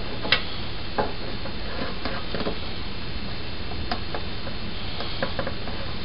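Hands pressing flour putty onto the rim of a metal pot lid: a few light clicks and taps on the lid over a steady background hiss.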